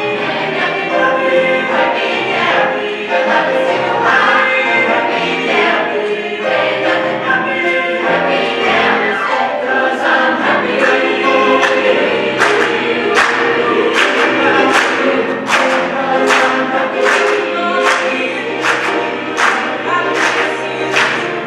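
Mixed choir singing with grand piano accompaniment, in a gospel style. Past the middle, sharp claps come in on the beat, about one and a half a second.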